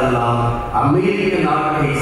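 A man's voice chanting a liturgical prayer in Tamil on long held notes, pausing briefly about three-quarters of a second in before the next phrase.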